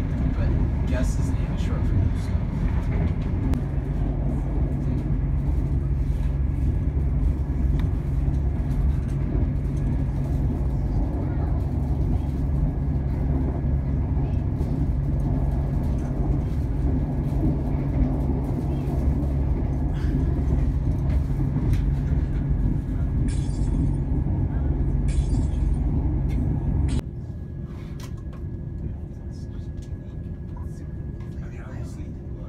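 Cabin noise of a diesel passenger train under way: a steady low rumble of running gear and engine. The rumble drops suddenly to a quieter level near the end.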